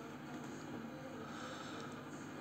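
Faint steady hum of a powered-on coffee vending machine standing with its door open.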